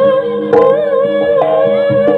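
East Javanese jaranan gamelan music: a held, wavering melody line over regular drum and struck-metal strokes.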